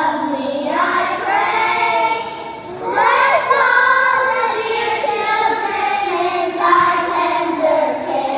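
Children's choir singing together, with a brief pause between phrases between two and three seconds in.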